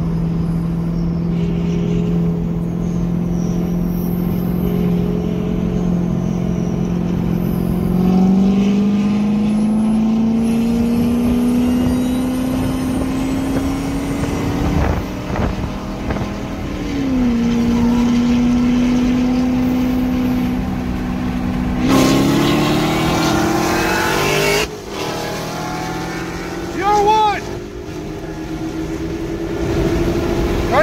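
A car engine heard from inside a car's cabin, accelerating hard: its note holds steady, then climbs, drops at a gear change about halfway through, and climbs again louder near the end.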